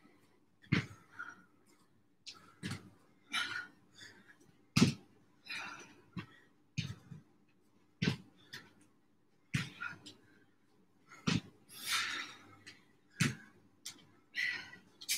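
Jump lunges on a foam gym mat: feet land with a thump about every one and a half to two seconds, seven or eight times, with heavy effortful breaths between the landings.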